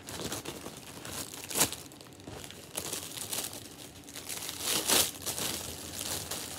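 Plastic packaging bag crinkling and rustling as it is handled and opened, with louder rustles about a second and a half in and near the end.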